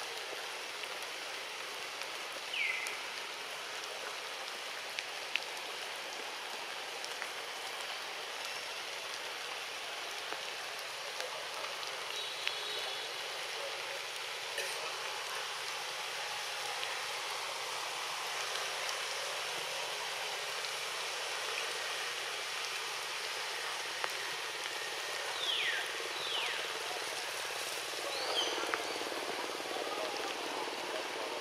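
Steady forest background hiss, with a few short, high, downward-sweeping chirps: one early and a cluster near the end.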